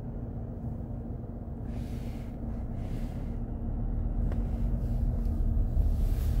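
Low rumble of a car heard from inside its cabin as it drives slowly along a snowy street, with a faint steady hum. The rumble grows gradually louder through the second half.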